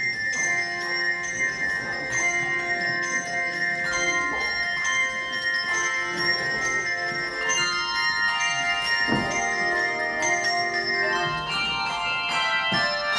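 Handbell choir playing a piece of music: struck bell notes ring on and overlap into chords, over one high note held throughout, with more and higher notes entering in the second half.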